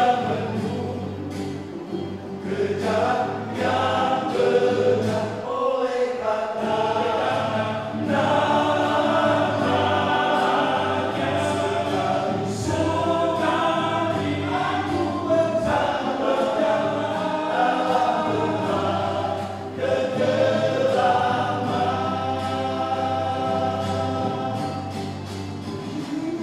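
Men's vocal group singing a church song in multi-part harmony into microphones, with short breaks between phrases about six seconds in and again about twenty seconds in.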